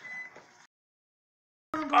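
Faint room noise that drops out to dead silence for about a second, then a voice begins near the end.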